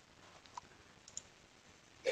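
Near silence: room tone with two faint, short clicks.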